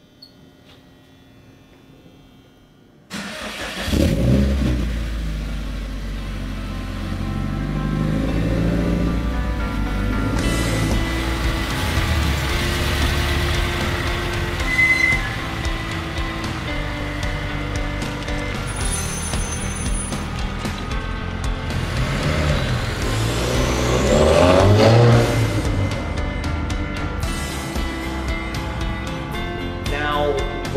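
A Subaru WRX's turbocharged FA20 flat-four running through a titanium exhaust as the car is driven. It comes in about three seconds in and revs up twice, near the start and again about three-quarters of the way through.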